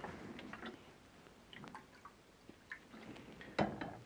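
Faint, scattered drips and light glassware taps as water is added to top up a jar of film developer solution to volume, with a slightly louder knock near the end.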